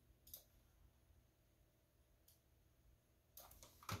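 Near silence with two faint computer mouse clicks, one just after the start and a fainter one about two seconds in.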